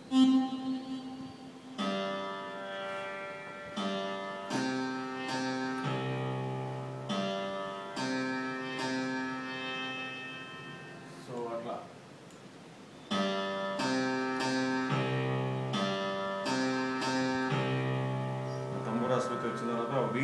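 A melody in Mohana raga played note by note on an electronic keyboard, each note ringing on, with a short break about eleven seconds in.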